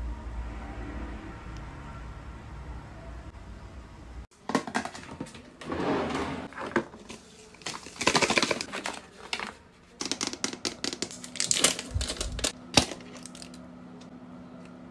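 Plastic cosmetic jars and containers being handled: clusters of quick clicks, taps and rattles in short bursts, starting abruptly about four seconds in after a stretch of low steady background.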